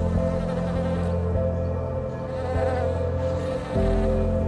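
Honeybees buzzing over soft background music of long held chords, the chord changing near the end.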